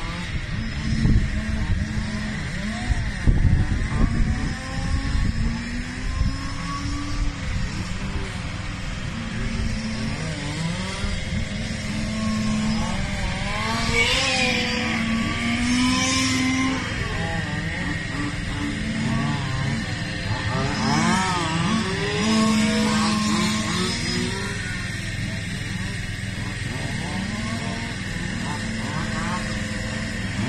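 1/5-scale petrol RC touring cars with 10 mm restrictors lapping a track, their small two-stroke engines revving up and dropping back again and again through the corners, with several revs often overlapping.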